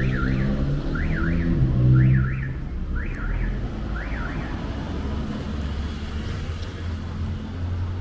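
A motor vehicle engine passing on the street, loudest about two seconds in and then fading. A high two-note up-and-down chirp repeats about once a second over the first four seconds and dies away.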